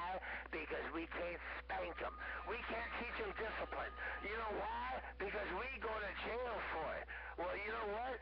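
Voices received over a two-way radio, talking without a break but not clear enough to make out, over a steady low hum. A thin steady whistle tone sounds for about two seconds, starting about two seconds in.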